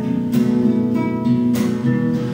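Acoustic guitar strumming chords between sung lines, with two strong strums about a second apart and the chords left ringing.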